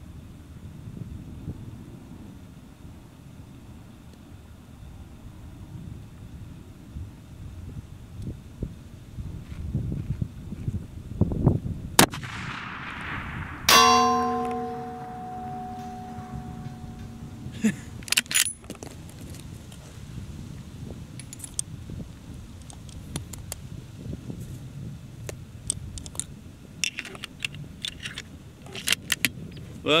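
A single shot from a Savage 110 bolt-action rifle in .338 Lapua Magnum about halfway through, followed by a metallic ringing that fades over about four seconds. Scattered clicks of the rifle being handled come before and after it.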